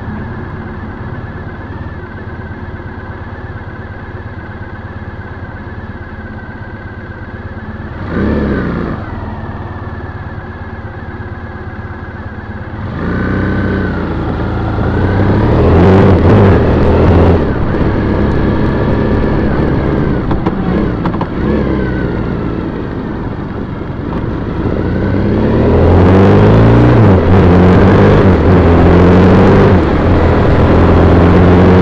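2010 Triumph Bonneville T100's 865 cc air-cooled parallel-twin engine idling steadily, then, about thirteen seconds in, pulling away and accelerating through the gears, much louder, with wind noise building near the end.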